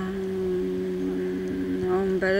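A single voice holding one long, steady hummed note in Buddhist mantra chanting, with no break in the pitch.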